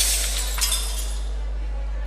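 Glass-shatter sound effect in a dance-routine music mix, its tinkling tail fading away over a steady low hum.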